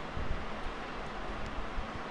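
Steady background hiss of room noise, with a few faint low bumps.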